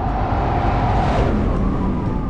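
A whoosh transition sound effect: a swell of noise that builds to about halfway and then fades.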